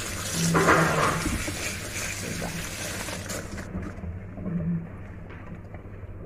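Kitchen tap water running onto arugula leaves in a plastic colander while a hand rinses them; the water cuts off suddenly a little past halfway, leaving only a faint low hum.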